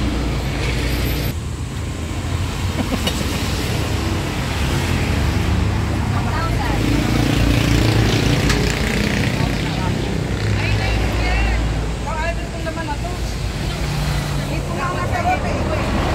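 Road traffic passing close by, with cars, trucks and motorcycles going past in a steady low rumble that swells as each vehicle passes.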